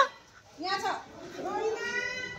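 A small child's high-pitched voice: a short falling call a little after half a second in, then a long drawn-out call from about a second and a half in.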